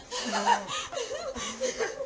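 High-pitched laughter in several short bursts, with voices overlapping.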